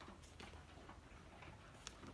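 Near silence: faint handling noise from fingers on a red watch presentation box, with one small click near the end.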